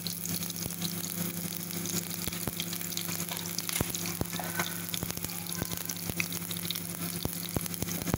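Sliced onions frying in desi ghee in a small steel pan: a steady sizzle broken by frequent sharp pops and crackles, over a steady low hum.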